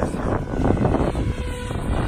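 Electric 700-size RC helicopter (SAB Goblin Black Thunder) flying overhead, its rotor and motor heard at a distance under heavy wind rumble on the microphone. A faint steady whine comes in a little over a second in.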